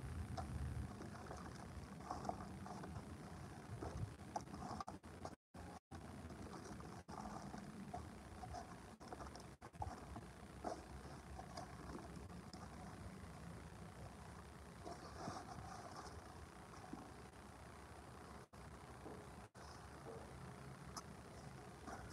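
Faint outdoor background noise with a few soft handling sounds. The audio drops out completely for an instant several times, like a weak livestream signal.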